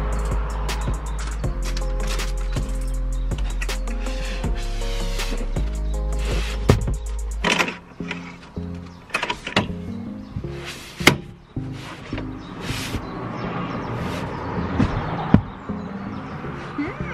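Background music with a steady bass line for about the first seven and a half seconds, then irregular knocks and bumps from slabs of foam mattress being lifted and laid onto the van's MDF bed platform.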